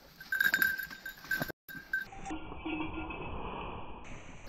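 A small bell on a Brittany spaniel's collar jingles in uneven strokes as the dog pushes through dead branches and bracken, with the brush rustling. After about two seconds the bell stops and only a duller rustling is left.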